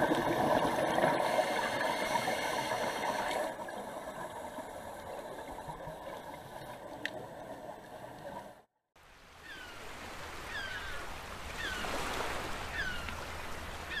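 Water noise picked up by an action camera underwater, a dense bubbling and gurgling that is loudest in the first few seconds. After a brief dropout the sound turns to fainter water at the surface, with short falling chirps repeating about once a second.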